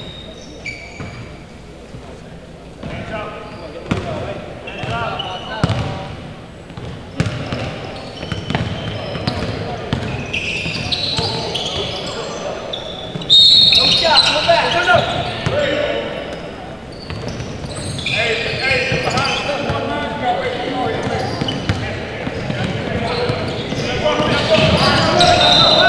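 Basketball game on a hardwood gym court: a ball bouncing, amid players' and spectators' voices around the hall. The noise gets suddenly louder about halfway through as play picks up.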